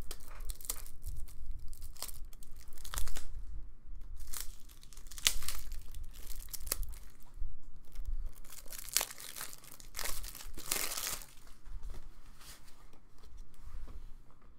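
Crinkling and tearing of plastic card packaging and sleeves as trading cards are handled: a string of short, crisp rustles, with a longer one about ten to eleven seconds in.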